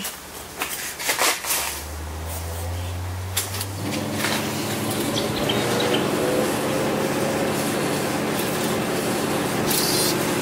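Océ VarioPrint copier going through its power-on startup tests. A few clicks come first, then a low hum starts about a second and a half in. At about four seconds its motors start up and run with a steady whir.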